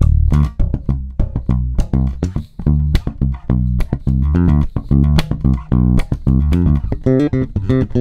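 Unaccompanied electric bass guitar playing a funky line of short, detached plucked notes with percussive clicks between them. The line is a minor pentatonic groove with the added Dorian sixth.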